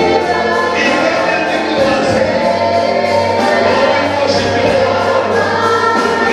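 A church worship team singing a gospel praise song together into microphones, several voices at once, loud and steady.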